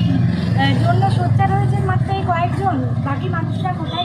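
A woman speaking over a steady low rumble of road traffic.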